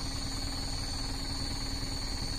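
Truck engine idling: a steady, even low rumble with no change in pace.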